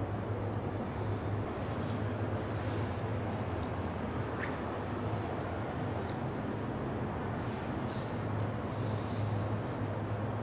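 Steady low hum and even hiss of a large hall's room tone, with a few faint clicks.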